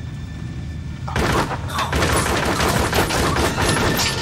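Rapid automatic gunfire: a dense, unbroken string of shots that starts about a second in and runs on, over the low steady drone of a jet's engines.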